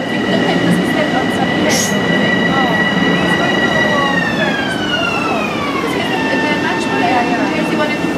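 Electric commuter train running along a station platform, with a rumble of wheels and a steady high electric whine. About four seconds in, the whine glides down in pitch over a couple of seconds, then holds steady at the lower pitch.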